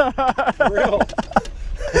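A man laughing in a quick run of short bursts, each falling in pitch, that tails off after about a second and a half.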